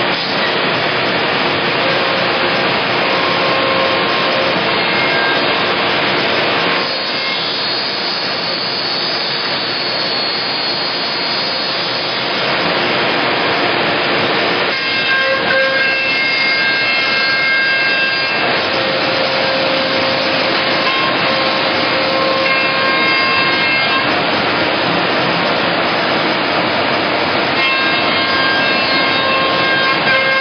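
Weeke CNC router cutting a cabinet-back panel: the spindle whines steadily as the bit runs through the sheet. Its tone and loudness shift every few seconds as the head moves along its path.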